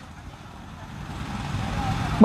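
A road vehicle passing, its noise swelling steadily louder.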